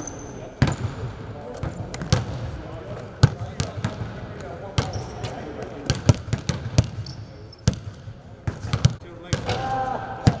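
Several basketballs bouncing on an indoor court in a large empty arena, sharp bounces at an irregular pace, several a second and often overlapping.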